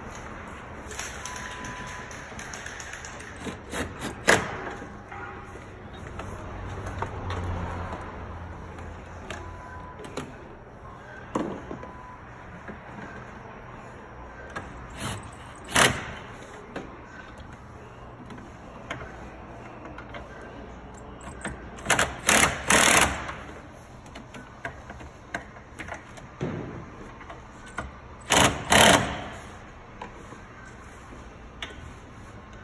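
Hand tools working the mounting nuts of a car's brake master cylinder: scattered sharp metallic clicks and clanks of a wrench on metal, with a quick cluster of three or four about two-thirds of the way in and two or three more near the end.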